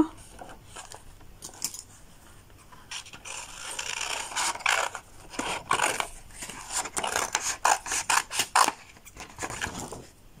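Scissors cutting through a sheet of paper: a run of irregular snips, roughly two a second, starting about three seconds in, with the paper rustling as it is turned.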